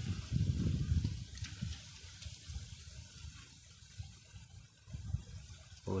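Low rumbling outdoor noise, loudest in the first second and a half and then fainter, with a few faint clicks.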